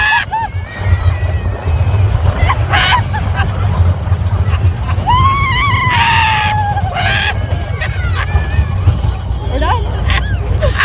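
Wind buffeting the phone microphone on a moving roller coaster, a steady low rumble, with riders laughing and screaming over it; a long high cry rises and then slowly falls about five seconds in.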